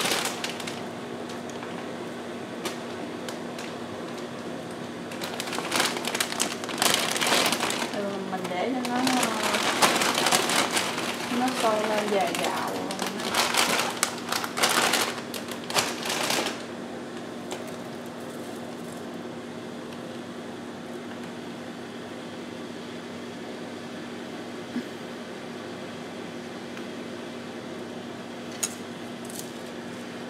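Dry rice vermicelli crackling and rustling against a steel pot as it is pushed down into boiling water, from about five seconds in to about sixteen seconds in. A steady low hum runs underneath.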